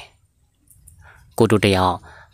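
A man's voice narrating a story in Burmese, picking up again after a pause of about a second and a half that holds only faint clicks.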